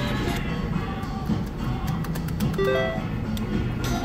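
Three-reel slot machine spinning its reels, with a series of short clicks and then a brief rising run of electronic beeps near three seconds in, over steady background music.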